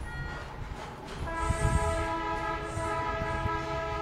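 A long, steady horn blast sounding several tones at once, starting about a second in and held to the end, over a low rumbling background.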